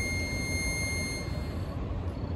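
Harmonica holding a single high final note that fades out a little over a second in, over a steady low rumble of outdoor background noise.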